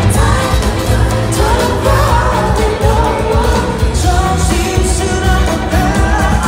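Live pop song: a male singer singing into a handheld microphone over a full band with a heavy, pulsing bass and drums, loud through the arena sound system.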